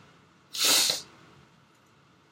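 A single short, loud, breathy burst from the man, lasting about half a second, like a sharp breath or stifled sneeze.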